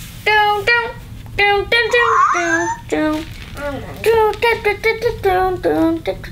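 High-pitched, wordless voice sounds in quick short runs, child-like babble and exclamations with no clear words.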